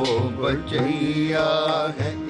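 Sikh Gurbani kirtan: a male ragi singing a shabad with a wavering voice over a steady harmonium and tabla.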